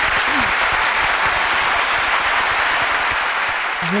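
Studio audience and hosts applauding, a steady dense clapping that runs on until a woman starts speaking near the end.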